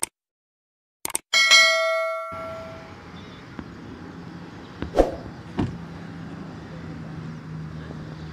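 Subscribe-button sound effect: a couple of quick mouse clicks followed by a bright bell ding that rings out for about a second. Then roadside ambience with a low steady hum, broken by two thumps about half a second apart, around five seconds in.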